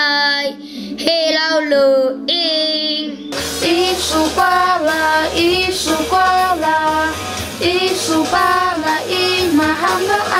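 A child singing high sung phrases over a steady held backing note; about three seconds in it changes to a different song, young female voices singing a song in the Atayal (Squliq) language over a backing track with bass.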